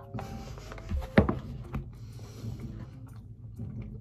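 A person eating a spoonful of hot oatmeal: quiet mouth and chewing sounds, with one sharp knock about a second in.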